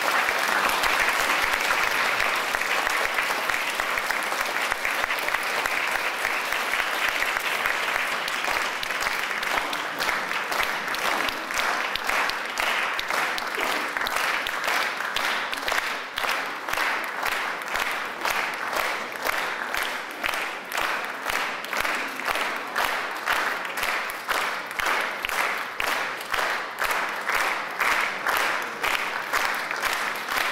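Audience applause: dense, steady clapping that about halfway through falls into rhythmic clapping in unison, roughly one and a half claps a second.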